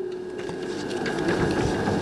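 Sheets of paper rustling and crackling as they are handled close to a microphone, busiest in the second half.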